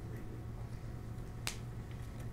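A steady low hum with a single sharp click about one and a half seconds in.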